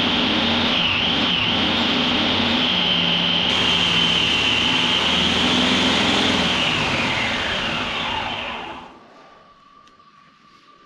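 Homemade belt grinder running with a steady high whine while a spring-steel knife blade is ground on the belt, sparks flying. The grinder is then switched off: near the end the whine falls in pitch and fades out over about two seconds as it spins down.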